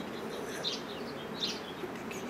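A flying insect buzzing steadily close by, with a few short, high bird chirps.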